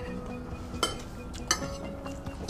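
Metal cutlery clinking on ceramic plates twice, a short ringing clink a little under a second in and another about half a second later, over faint background music.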